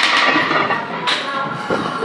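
A loaded barbell knocks once against the steel squat rack about a second in, a sharp metallic hit, as a heavy squat is finished. Background music plays steadily underneath.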